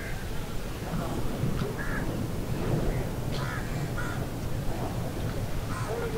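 Birds calling in short, separate calls, roughly one every second or so, over a steady low rumble of outdoor ambience.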